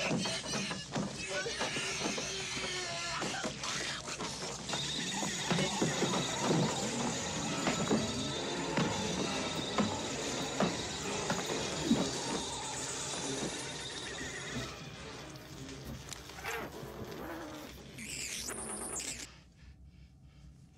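Horror-film soundtrack audio: dramatic music mixed with shrill screams and shrieks, dense and chaotic for most of the stretch. It thins out in the last few seconds, with a brief high shriek near the end.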